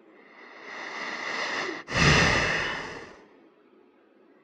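A person breathing close to the microphone: a long breath in that swells over about a second and a half, then a louder, shorter breath out that rushes over the microphone.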